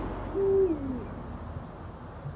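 An owl hooting once: a single note held briefly, then sliding down in pitch, over faint background hiss.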